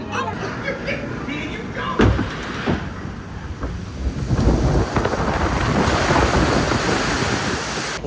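Log flume boat going over the crest and down the big drop: wind rushing over the microphone and water rushing, building from about four seconds in. A single sharp knock about two seconds in.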